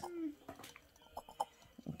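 Scattered light clicks and taps from small plastic tubes and a wooden stirring stick being handled while mixing a liquid, after a brief voice sound at the start.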